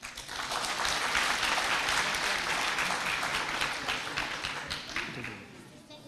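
Audience applauding, dense clapping that thins out and dies away near the end.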